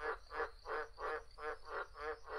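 A steady run of croaking animal calls, evenly spaced at about three a second.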